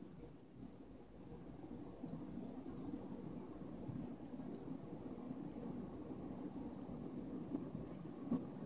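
Faint, steady low background noise with a soft hum, getting slightly louder about two seconds in, and one small tick near the end.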